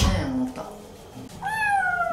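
A young kitten gives one long, high-pitched meow about one and a half seconds in, sliding slightly down in pitch. It is a protest at being held for its bath.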